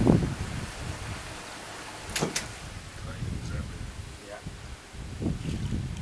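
Wind buffeting the microphone, a steady low rumble, with a thump at the start and a sharp double snap a little over two seconds in. Low voices come in near the end.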